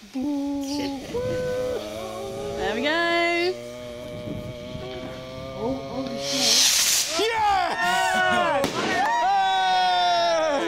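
Voices singing long wordless notes while a firework fuse burns, then about six and a half seconds in a short loud hiss as the small rocket ignites and launches, followed by voices whooping with rising and falling pitch.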